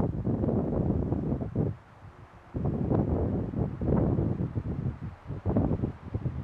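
Wind buffeting a clip-on microphone in gusts. The low rumbling noise comes in two long surges, with a lull about two seconds in.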